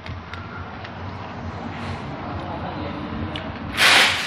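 A person eating a spoonful of food, with faint mouth sounds and a few small ticks over a steady background hum. A short, loud rush of noise comes near the end.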